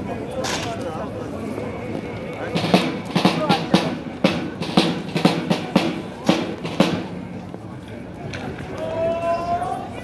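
Honor guard drill: a run of sharp, irregular claps and thuds, rifles slapped and boots stamped on stone paving, over crowd chatter. Near the end music starts with a held note that slides up in pitch.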